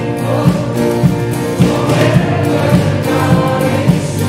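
Contemporary worship song: voices singing the chorus over a band with a steady beat, a little under two beats a second.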